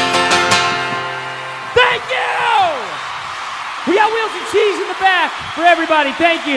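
A strummed acoustic guitar chord struck at the start and left ringing until it fades, the closing chord of a song. About two seconds in comes a long falling vocal cry, then a run of short voiced sounds.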